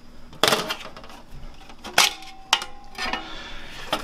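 Sheet-metal power supply casing clinking and clanking as it is pried and handled, with three sharp metallic strikes about half a second, two seconds and two and a half seconds in; the later two leave a brief ringing tone.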